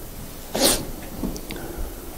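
A man blowing his nose into a handkerchief: one short, sharp burst about half a second in, followed by a few faint small sounds.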